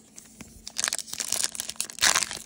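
Foil Topps trading-card pack wrapper crinkling and tearing as it is ripped open by hand. It starts a little under a second in and grows louder as the rip goes on.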